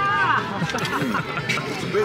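A man laughing and voices talking over background chatter, with a short clink about one and a half seconds in.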